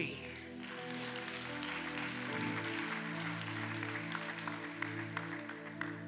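An audience applauding over soft, sustained background music chords; the chord changes about two seconds in.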